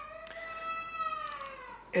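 A single long, high-pitched wailing cry lasting nearly two seconds, rising slightly and then falling away.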